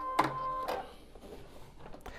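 Baby Lock Vesta computerized sewing machine giving a short steady tone, with a click at either end, that lasts about half a second at the start. After it there is only faint handling of the fabric.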